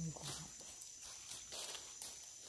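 Footsteps crunching and shuffling on dry leaf litter as a hiker descends a steep forest trail. A brief vocal sound from the hiker comes right at the start.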